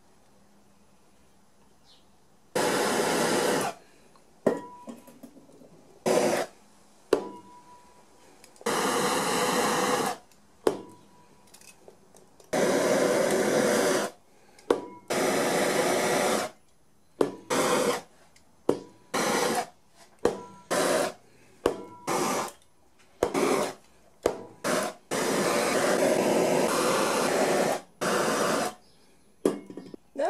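Handheld rotary tool cutting a circle out of a plastic storage tote lid. It runs in about a dozen bursts of one to three seconds, starting about two and a half seconds in, with short pauses between them.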